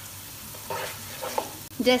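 Sliced onions frying in hot oil in a non-stick pot, sizzling steadily while a wooden spatula stirs them, with a couple of short scraping strokes near the middle.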